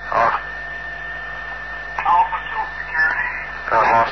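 Brief, muffled men's voices and radio chatter on a field tape recording, over a steady high-pitched hum that runs under everything.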